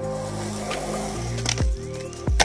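Background music with sustained notes and a deep kick-drum thump about one and a half seconds in.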